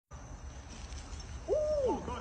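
A dog's single short hooting howl-bark about one and a half seconds in, held briefly and then falling in pitch, over a low steady hum.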